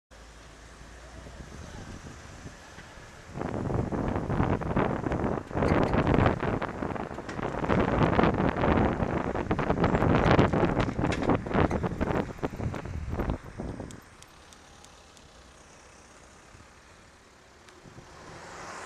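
Loud, dense rustling and crackling noise close to the microphone, full of sharp clicks, starting abruptly about three seconds in and stopping suddenly about ten seconds later. A faint steady in-car hum is heard before and after it.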